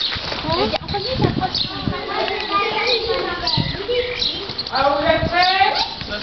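Girls' voices chatting near the microphone, over the dull hoofbeats of a horse cantering on arena sand.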